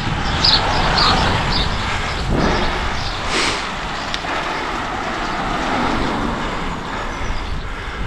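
Wind rushing over a bike-mounted camera's microphone, with tyre and road noise, as a road bike rolls along a tarmac road. A car goes by on the road.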